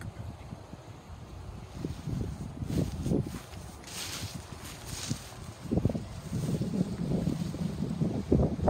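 Wind buffeting the microphone in uneven gusts, with a brief higher rustle in the middle.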